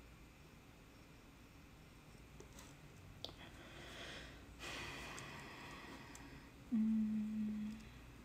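Faint scratching and rubbing on a carved clay candle holder, in two soft stretches of about a second each. Near the end comes a short, steady hum of a person's voice lasting about a second, the loudest sound.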